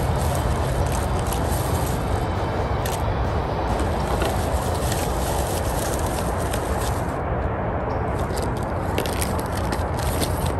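Steady rushing outdoor noise throughout, with light clicks and rustles of small objects being handled.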